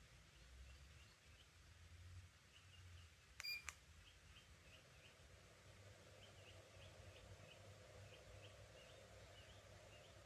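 Near silence, broken once about three and a half seconds in by a short electronic beep: the ceiling fan's receiver answering a press on its remote. A faint steady hum comes in a couple of seconds later.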